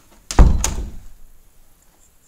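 A white panelled interior door knocked against with a loud thud, then a sharp click about a quarter second later, the sound dying away within a second.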